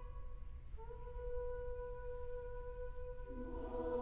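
Women's choir singing softly: a single held unison note begins about a second in, then lower parts enter beneath it in harmony shortly before the end.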